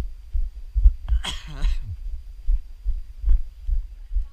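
Low, regular thuds of a runner's footfalls jolting a body-worn action camera, about two to three a second. About a second in, a short cry falls in pitch.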